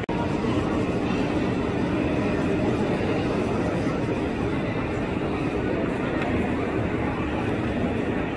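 Steady background hubbub of a busy exhibition hall: many indistinct voices and general room noise.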